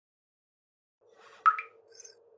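Silence for the first second, then a faint steady low tone comes in, and a single short pop with a brief ring sounds about halfway in: a sound effect for an animated logo reveal.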